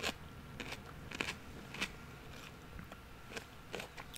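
Someone chewing salted cucumber slices close to the microphone: soft, irregular crunches and mouth clicks, about eight over a few seconds.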